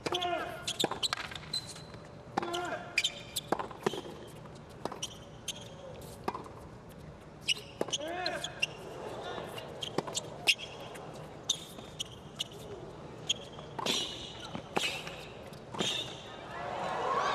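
Tennis rally on a hard court: a long run of sharp pops from racket strings striking the ball and the ball bouncing, roughly once or twice a second, with short grunts from the players on some strokes.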